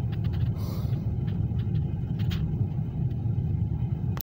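Car cabin noise while driving slowly: a steady low rumble of engine and tyres, with a few faint clicks.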